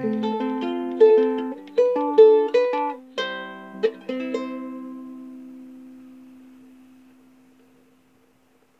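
Ukulele playing the closing phrase of a song: a short run of plucked notes and chords, then a final chord left to ring and fade out over about four seconds.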